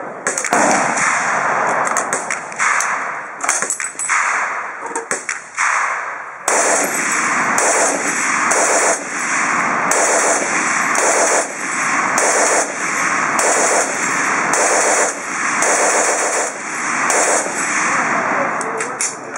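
A German MG08/15 water-cooled, belt-fed machine gun in 7.92 mm Mauser firing close up. Longer strings of fire at first, then about six seconds in a run of short bursts, roughly one a second, with brief pauses between them.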